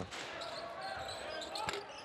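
Faint game sound on a basketball court in a near-empty arena: low court noise and distant voices, with a single basketball bounce about three-quarters of the way through.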